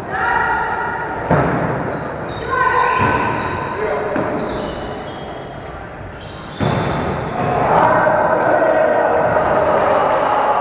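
Volleyball rally in a reverberant gym: a ball is struck with sharp smacks about a second in, at about two and a half seconds and near seven seconds, over players' voices calling out.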